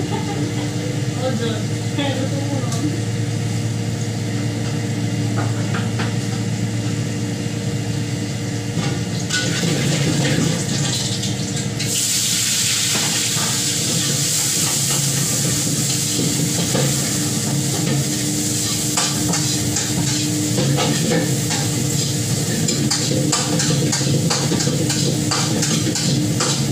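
Food frying in a hot pan, a loud sizzle that starts suddenly about halfway through, with a metal utensil scraping and clinking against the pan as it is stirred. A steady low hum runs underneath.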